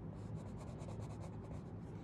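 Crayon scribbling on a workbook page: quick, faint back-and-forth scratching strokes while a few grid squares are coloured in.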